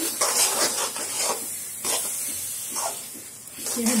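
A spoon scraping and stirring a thick mixture of grated coconut and reduced milk in a metal pan, with a soft sizzle from the cooking mixture. The strokes are irregular and grow quieter near the end.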